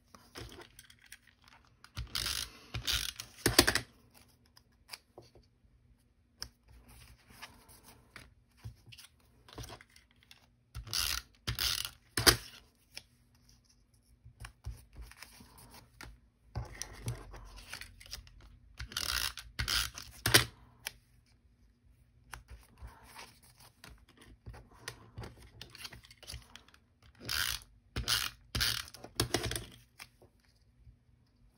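A handheld adhesive tape runner drawn across card stock in four groups of several quick strokes, with paper and card handled more quietly between the groups.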